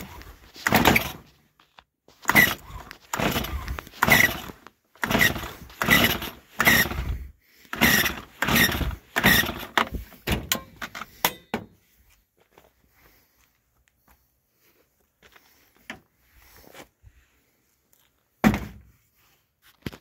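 Stihl MS 250 two-stroke chainsaw being pull-started on full choke: about a dozen quick yanks of the recoil starter cord, each a short rasping whirr as the engine turns over, then one more pull near the end. The engine never catches; the owner suspects it is flooded.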